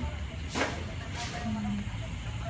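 A person's voice murmuring briefly over a steady low rumble, with a short hiss about half a second in.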